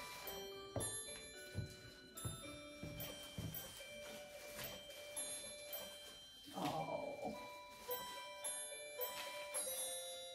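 Christmas chime music box playing a carol on its little bells: a tinkling melody of struck bell notes. About two-thirds of the way in there is a brief rustle of greenery being handled.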